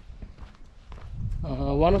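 Footsteps on grass with a low rumble on the microphone and a few faint clicks, then a man starts speaking near the end.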